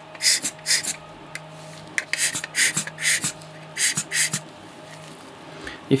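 A hand air blower puffing short blasts of air at a lens element to clear dust, about six hisses in quick pairs.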